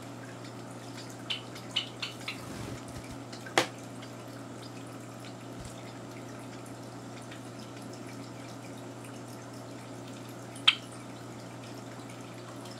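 A few short, high chirps from Java sparrows: a quick cluster about a second or two in and a single louder one near the end, with a sharp click about three and a half seconds in, over a steady low hum.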